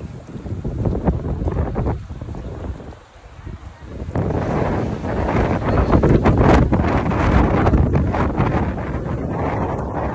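Wind buffeting the microphone in gusts, a deep rumbling noise that drops away briefly about three seconds in and then comes back louder from about four seconds in.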